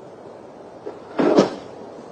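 A faint knock just under a second in, then a louder, short dull bang with a couple of quick hits about a second and a quarter in, the sound of something knocked against wooden furniture.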